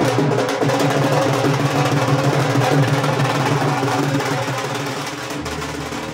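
Dhol drums played in a fast, busy rhythm. The drumming fades out toward the end as a low, steady music tone comes in.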